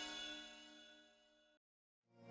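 The bell-like chime of a logo sting ringing out with many steady overtones, fading away and stopping about a second and a half in, followed by silence.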